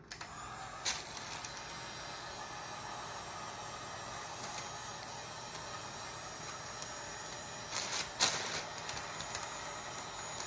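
Handheld electric heat gun running steadily, its fan blowing with an even hiss as it shrinks plastic wrap around a gift tray. A few short sharper sounds break in about a second in and again around eight seconds.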